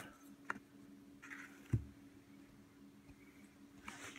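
Quiet handling noise over a faint steady hum: a light click about half a second in and a soft thump a little after a second later.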